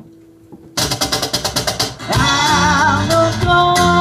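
A live acoustic band starts up after a brief near-pause: strummed acoustic guitar with percussion and electric bass come in about a second in. A male voice begins singing about two seconds in, holding long notes with vibrato.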